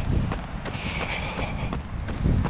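Wind buffeting the microphone of a camera carried by a jogging runner, with faint footfalls on the path.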